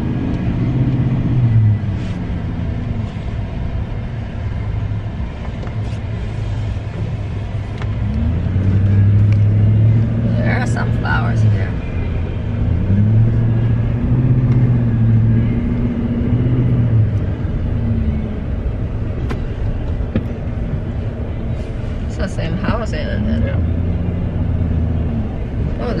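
Car engine and road noise heard from inside the cabin while driving slowly, a low steady rumble with the engine hum rising and falling several times as the car speeds up and slows.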